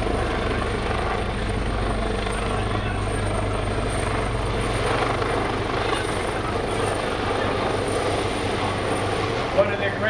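AgustaWestland AW139 twin-turboshaft helicopter flying past, with a steady rotor and engine noise that holds even throughout.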